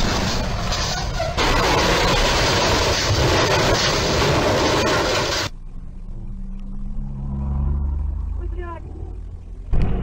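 A loud, steady rushing noise that cuts off suddenly, then the low hum of a vehicle engine. Near the end comes a sudden loud crash as a timber-laden truck tips over onto its side.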